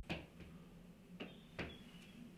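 A few soft footsteps on a floor over quiet room noise, two of them close together a little past a second in.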